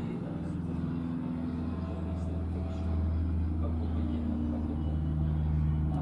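A steady low hum, a little louder in the second half, with faint voices talking in the background.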